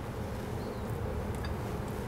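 A steady low electrical or fan-like hum in the kitchen, with a few faint soft ticks about halfway through.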